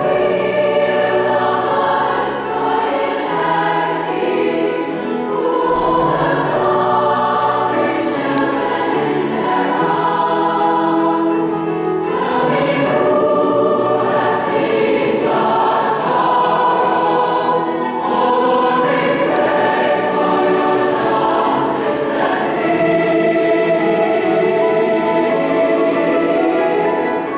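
A large mixed choir of male and female voices singing in harmony, with sustained chords that shift every second or so.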